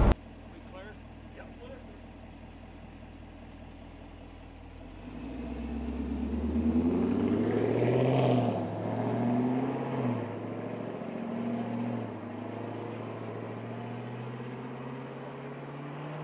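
Chevrolet Camaro SS pace car's V8 engine accelerating away hard, its pitch climbing through the gears with a drop at each of a few upshifts. It is loudest as the car passes about eight seconds in, then settles into a steady drone as it moves off down the straight, after a faint low hum in the first few seconds.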